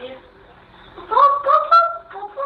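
A high-pitched child's voice vocalizing in a string of short held notes that step up and down in pitch, starting about a second in. The sound is thin, as from a phone recording.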